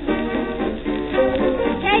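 1934 hot jazz dance orchestra playing from a shellac 78 record, the band carrying on between the sung lines; the female vocalist comes back in right at the end.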